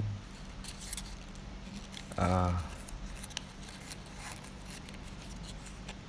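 Small folded paper slip being unfolded by hand: faint, scattered paper crinkles and light crackles over a low steady hum.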